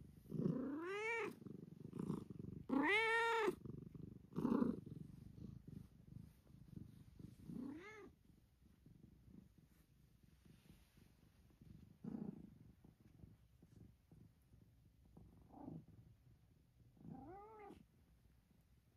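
A domestic cat meowing several times, each call rising and falling in pitch, the loudest about three seconds in and a last one near the end, over a low purr.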